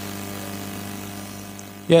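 A steady low hum of several even tones over faint room noise, with a man's voice saying "Yeah" right at the end.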